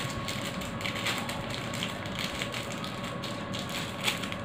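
Rapid small clicks and crackles of hands handling a wooden neem comb, with a light ratcheting quality as it is turned and fingered.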